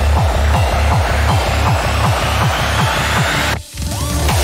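Fast electronic dance music at 160 bpm, with a rapid run of pitch-dropping bass kicks under dense synths. A rising sweep builds, and near the end the music cuts out for a moment before the beat comes back in.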